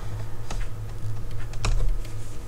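A stylus clicking against a pen tablet while a mark is hand-written, giving two sharp clicks (about half a second in and near the end) and a few fainter ticks, over a steady low electrical hum.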